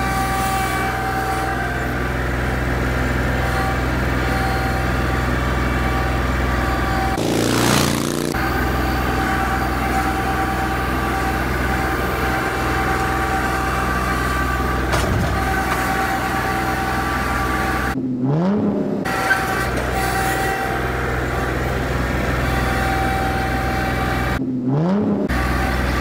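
Kubota L3901 tractor's three-cylinder diesel engine running steadily under load while it works the front loader. A short rushing noise comes about seven seconds in, and the sound briefly cuts out twice in the last third.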